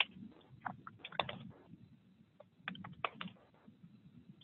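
Computer keyboard being typed on, faint, in short irregular bursts of keystrokes with the busiest runs about a second in and near three seconds.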